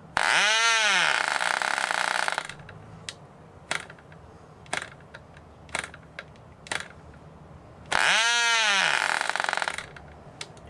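Tiny Cox glow-plug two-stroke model engine on nitro fuel catching on a hand flip of the propeller and buzzing for about two seconds, its pitch climbing then falling away as it dies; it does the same again about eight seconds in. In between, light clicks about once a second as the propeller is flipped by hand without the engine firing.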